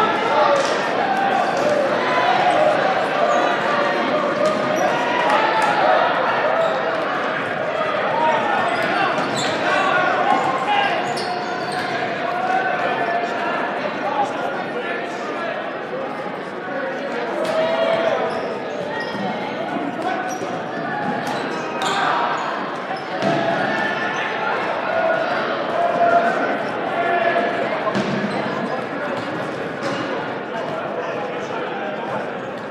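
Dodgeballs bouncing and smacking in a gym, many short impacts, over a constant din of players and spectators shouting, echoing in a large hall.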